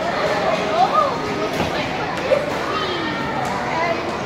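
Children's voices chattering and calling out over the steady background hubbub of a large indoor public hall.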